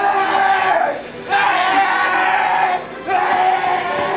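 Voices shouting in long held calls, three in a row with short breaks between.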